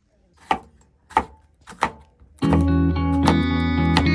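Three separate knife chops on a wooden cutting board, about two-thirds of a second apart. About two and a half seconds in, louder guitar music comes in and carries on.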